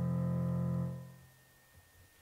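Keyboard music holding a sustained chord that fades out about a second in, followed by a faint knock or two.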